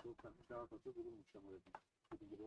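Quiet speech: a low male voice talking for about the first second, then trailing off.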